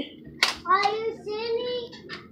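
A single sharp click about half a second in, then a child talking in a high voice in the background, with a fainter click near the end.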